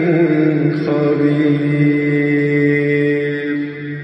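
A single voice chanting a drawn-out melodic line, settling into one long held note about a second in and fading out at the very end.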